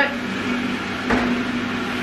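Steady hum of a small motor running, with a single short knock about a second in.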